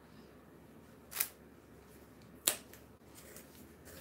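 Two short, sharp clicks, about a second in and again about two and a half seconds in, the second louder: plastic cups and a stir stick being picked up and set down on the work table.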